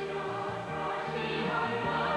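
Music: a choir singing over a moving bass line.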